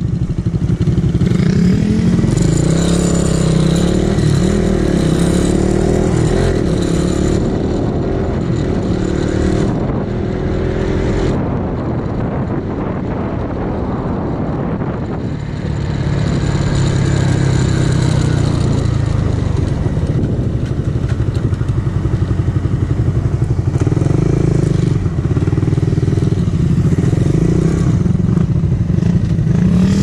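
Suzuki Raider 150 Fi single-cylinder four-stroke motorcycle engines running as the bikes ride along, heard from on board one of them. The engine note rises and falls with the throttle, eases off around ten seconds in and picks up again around sixteen seconds.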